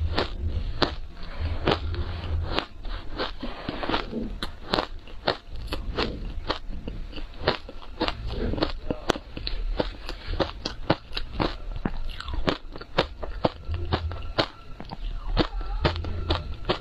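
Close-miked crunching and chewing of frozen ice coated in milk powder and matcha: a steady, irregular run of sharp crunches, several a second.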